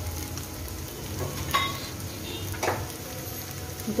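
Finely chopped onions frying in oil in a kadhai, sizzling steadily. Two brief sharper sounds come through, one about a second and a half in and one near three seconds.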